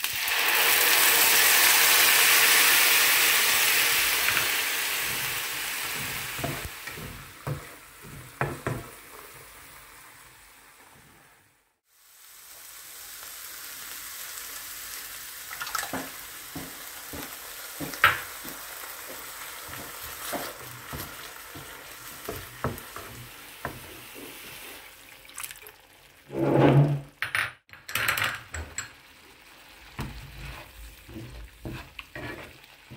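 Onion, garlic and ginger paste hitting hot oil in a frying pan with a loud sizzle that dies away over several seconds. After a break, the paste and tomato puree fry more quietly while a spatula stirs and scrapes in the pan with scattered clicks.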